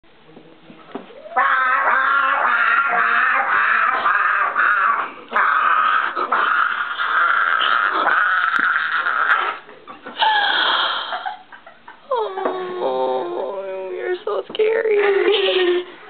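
A person screeching in imitation of a raptor dinosaur: several long, high, strained shrieks a few seconds each, then shorter cries near the end.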